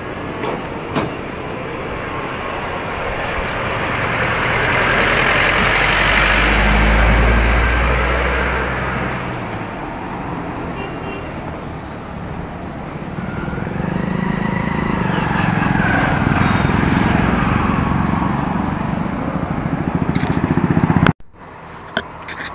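Motorcycle riding noise: engine and rushing wind on the microphone, swelling twice with a deep rumble, loudest about 7 and 16 seconds in. It cuts off abruptly about a second before the end, giving way to quieter roadside traffic noise.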